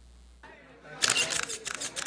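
Camera shutters clicking in quick succession, about six or seven a second, starting about a second in.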